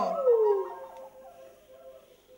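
Wolf howl, one call that falls in pitch and fades away over about two seconds.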